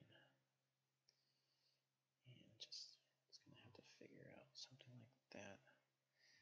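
A man's soft, indistinct muttering, starting about two seconds in and lasting about three seconds.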